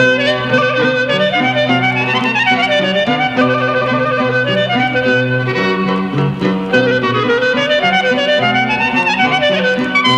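Greek folk clarinet playing an ornamented instrumental passage of a tsamiko, with quick runs, over a steady low accompaniment, from a 1936 recording.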